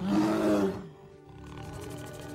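A bear roars once, loudly, in the first second, with film score music running underneath.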